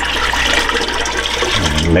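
Water pouring steadily from a stainless steel pot into a marine toilet bowl, splashing in the bowl, to prime the toilet's hand pump.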